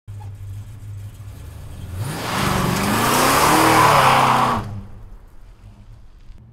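1973 Plymouth Duster's Ray Barton Hemi V8 running at a low idle, then revving up hard about two seconds in as the car accelerates. It is loud for about two and a half seconds, then falls back to a low rumble near the end.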